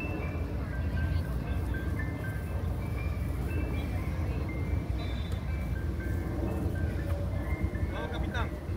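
Ice cream truck jingle: a simple tune of single high notes stepping up and down, over a steady low rumble.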